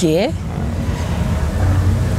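Steady low rumble of outdoor background noise, with the tail of a spoken word at the very start.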